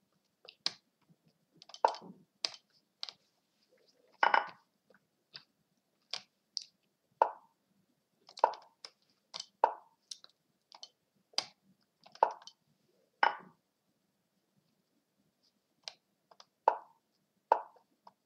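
Mouse clicks and the short wooden 'plop' of the Lichess move sound as chess moves are played online. They come as a string of separate clicks, about one a second, with a pause of about two seconds near the end.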